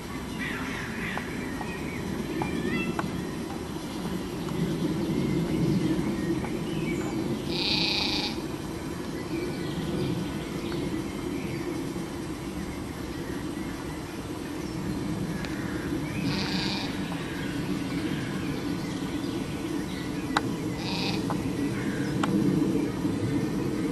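Outdoor background with a steady low rumble, faint chirps in the first few seconds, and three short, high-pitched animal calls about 8, 16 and 21 seconds in.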